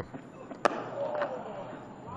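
Cricket bat striking the ball once, a single sharp crack about two-thirds of a second in, from a mistimed shot.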